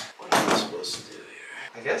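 A sudden knock and clatter of a plastic PVC toilet flange being worked in the drain pipe and pulled up, about half a second in, followed by lighter scraping.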